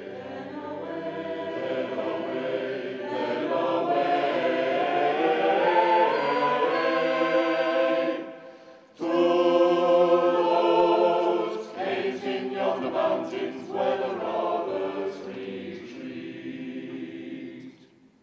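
Mixed choir singing a cappella, swelling louder over the first several seconds. There is a short break about eight and a half seconds in, then the choir comes back in full before fading away near the end.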